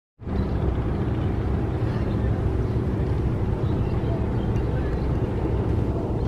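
Diesel engines of a river passenger launch running steadily at speed: an even low rumble with a hiss of water and wind over it.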